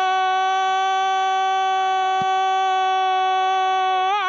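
A football commentator's drawn-out goal cry, one long 'gooool' held on a single steady, high pitch.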